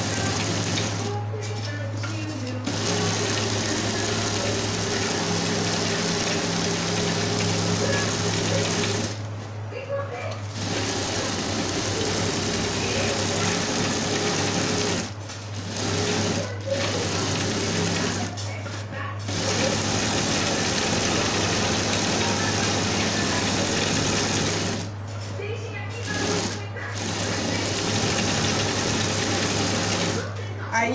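Industrial flat-bed sewing machine stitching a row of trim onto a rug, running in bursts of several seconds and stopping briefly about five times. A steady motor hum carries on underneath.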